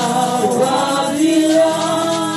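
Gospel singing: a woman sings into a handheld microphone, holding long notes that slide between pitches.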